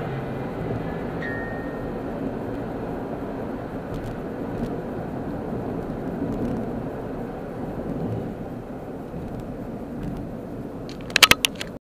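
Steady road and tyre noise inside a car cruising on a freeway. Near the end, a quick run of loud knocks, and then the sound cuts off.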